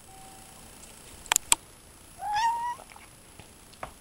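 A domestic cat meows once, a short call rising in pitch, about two seconds in, after two sharp clicks.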